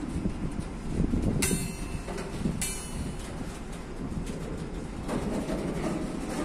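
Freight train of rail tank cars rolling past slowly, the wheels rumbling and knocking over the rail joints. Two short high screeches come about a second apart, between one and a half and three seconds in.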